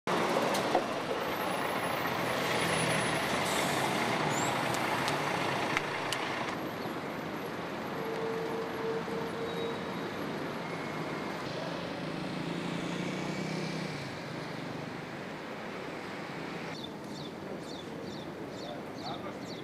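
Street traffic: a bus's engine as it pulls away, then steady road traffic noise, with short bird chirps near the end.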